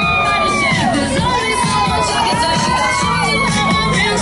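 A crowd cheering and shouting, many high voices holding and sliding in pitch at once, over music playing underneath.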